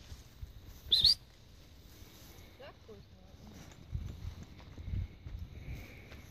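A single short, high, rising chirp or whistle about a second in, the loudest sound here, followed by soft low thuds and rustling of footsteps through dry grass.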